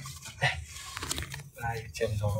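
Quiet, broken speech fragments over a low steady hum, with one brief sharp noise near the middle.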